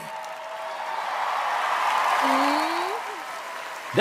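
Studio audience applauding and cheering, swelling to a peak midway and then fading, with one voice whooping upward in pitch about two seconds in.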